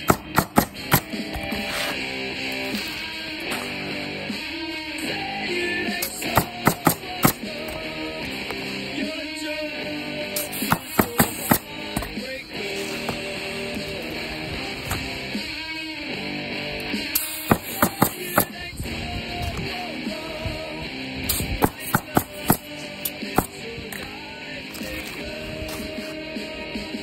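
Background music, over which a pneumatic roofing coil nailer fires in quick bursts of several sharp shots, about five bursts a few seconds apart, as asphalt shingles are nailed down.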